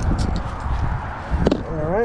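Handling noise from a metal lipless crankbait lure and tackle: a few light clicks, then a sharp knock about one and a half seconds in, over a low rumble of wind on the microphone. A man's voice starts right at the end.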